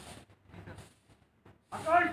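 A man's voice calling out drill commands outdoors: a few short calls, a pause, then a loud, drawn-out shouted command near the end.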